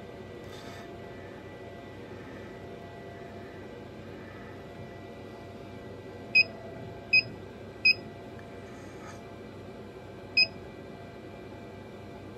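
Laser cutter running with a steady hum while its head is jogged into position, with four short electronic beeps past the middle: three about a second apart and a fourth a little later.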